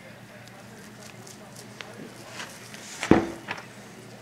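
Knife cutting and scraping meat away from a deer's leg bone, with scattered small clicks, and one sharp knock with a brief ring about three seconds in.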